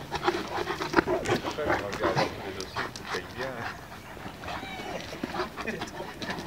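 Two large dogs play-fighting mouth to mouth, panting and vocalising, with many short sharp sounds scattered irregularly throughout.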